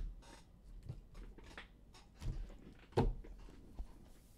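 Hands gathering and squaring a stack of sleeved trading cards on a table: a series of soft knocks and clicks, the loudest right at the start and about three seconds in.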